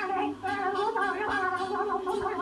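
A man making a wordless, warbling vocal noise with his face behind a watermelon, a single continuous wavering tone played back through a TV speaker.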